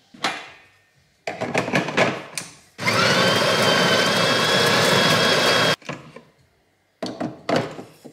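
Built-in burr grinder of a De'Longhi La Specialista espresso machine grinding coffee into the portafilter for about three seconds: a steady whir with a high whine that stops abruptly. Before it, metal clicks and clacks come as the portafilter is fitted into place, and more clacks follow near the end.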